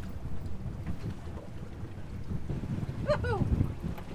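Wind buffeting the microphone aboard an open boat, an uneven low rumble, with a brief voice-like sound about three seconds in.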